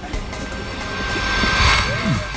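Film-score swell, a rising whoosh that builds to a peak shortly before the end and then eases, with low thuds beneath it from the scuffle and fall.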